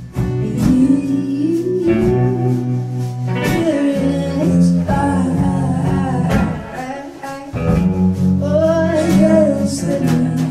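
Live acoustic music: a woman singing a melody over acoustic guitar accompaniment, with a short break between sung phrases about seven seconds in.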